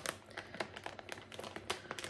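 Faint crinkling of packaging with many small clicks as a chopped-candle wax pack is handled.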